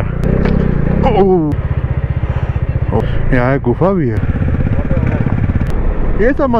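Motorcycle engine running while riding, a steady low pulsing that shifts abruptly about one and a half seconds in, with a few brief voices over it.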